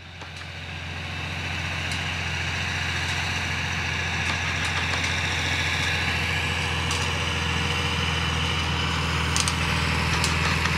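John Deere tractor's diesel engine running steadily while it pulls a Haybob through the hay, fading in over the first couple of seconds.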